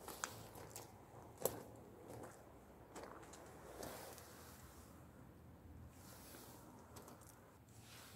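Faint rustling and crunching with scattered light clicks, the sharpest one about one and a half seconds in.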